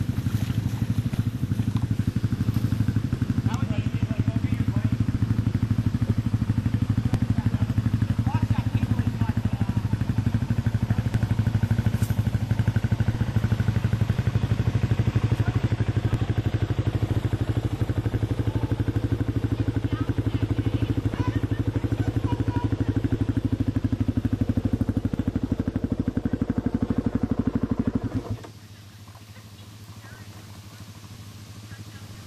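ATV engine running steadily at low revs close by, with an even rapid pulsing and no revving; the sound drops away suddenly about two seconds before the end.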